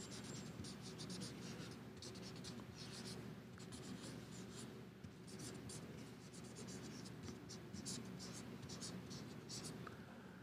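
Marker pen writing on a sheet of paper: quick runs of short strokes with brief gaps between characters, over a faint steady low hum.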